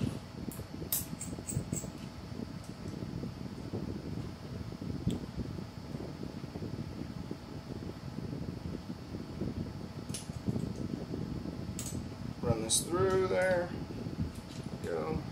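Hands working small metal hardware on an aluminium extrusion: rubbing and shuffling with a few light metallic clicks and taps, over a steady faint hum.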